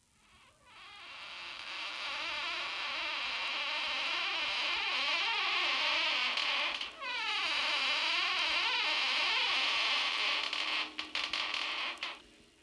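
Creaking door: a long, squealing hinge creak that wavers up and down in pitch, with a short break about seven seconds in and a few clicks near the end before it stops.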